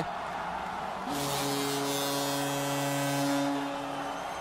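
Ice hockey arena goal horn sounding a steady, low, buzzing tone from about a second in, signalling a goal, over crowd cheering.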